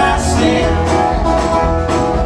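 Live country-rock band playing an instrumental break: strummed acoustic guitars and mandolin over bass, with a steady beat.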